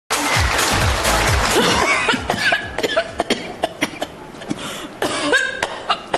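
A man coughing hard and over and over, a staged smoker's cough, over music. The coughs come as many short sharp bursts after a loud opening of about two seconds.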